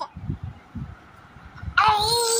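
Soft low thumps, then near the end an infant's high-pitched squeal begins, one long call that bends in pitch.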